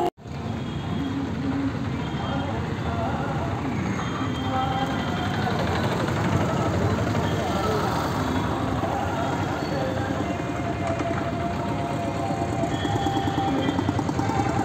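Busy street background: traffic and vehicle engines mixed with indistinct voices, steady throughout.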